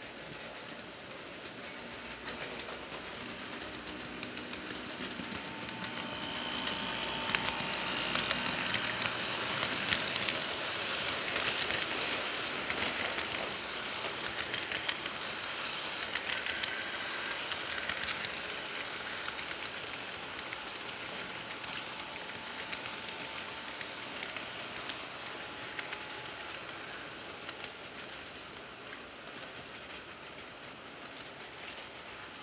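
Model freight train running past on sectional track: a rolling rattle full of fine clicks from the wheels crossing the rail joints, with a faint whine from the locomotive motors. It swells to its loudest about a third of the way in, then slowly fades as the train moves away.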